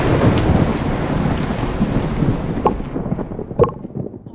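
Thunderstorm: the rumble of a thunderclap dying away over steady heavy rain, which fades out about three seconds in.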